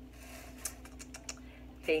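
A few scattered light clicks and taps from objects being handled, with a faint steady hum underneath.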